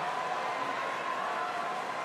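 Steady background noise of an arena crowd, an even wash of sound with no single event standing out.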